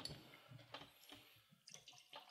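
Near silence: room tone with a few faint small clicks.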